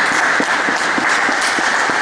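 A crowd of people applauding, many hands clapping in a steady, dense patter.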